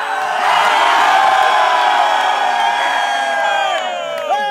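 A group of players cheering and shouting together in one long collective yell that swells about half a second in and holds before tailing off.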